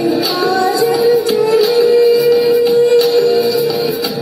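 A woman singing into a handheld microphone over recorded backing music with a beat, holding one long note for about two seconds in the middle.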